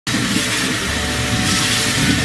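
Tap water running into a stainless-steel bowl of green plums sitting in water, with hands swishing and rubbing the fruit as it is rinsed: a steady rushing splash.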